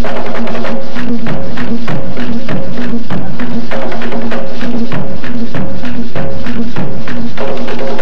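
Mapalé drum music: hand drums playing a fast, driving rhythm with sharp strokes several times a second, over a steady low pulsing pitch.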